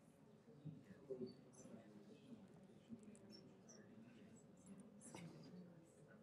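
Near silence: faint room tone with a distant murmur of voices and a few small clicks, one of them about five seconds in.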